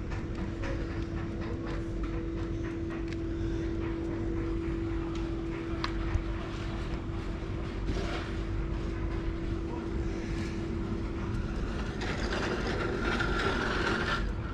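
A steady machine hum on one pitch that dies away about eleven seconds in, over a constant low outdoor rumble.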